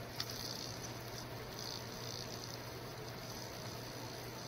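Faint steady background hiss with a low hum from the recording, and a single small click just after the start.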